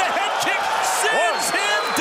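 Men's excited shouting and exclamations, voices sweeping up and down in pitch, reacting to a fighter being knocked down.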